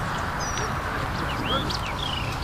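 Small birds chirping in short whistled notes that glide up and down, several coming close together in the second half, over a steady low outdoor rumble.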